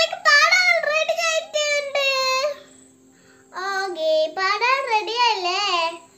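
A young girl singing two sustained, wavering phrases, with a pause of about a second in the middle.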